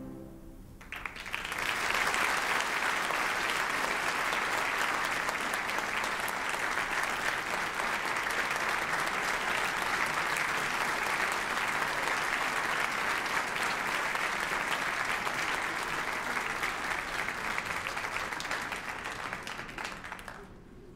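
The last note of music dies away in the first second. Then a large audience applauds steadily, and the clapping fades out near the end.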